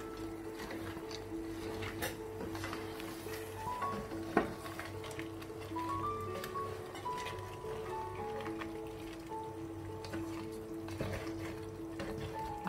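Background instrumental music with a simple stepped melody, over light clicks and scrapes of a wooden spatula stirring a thick crab gravy in a stone-coated pan, with one sharp knock about four seconds in.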